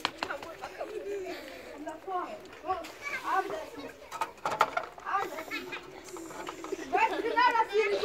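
Several children's voices chattering and calling out, with no clear words, and a few sharp clicks about halfway through.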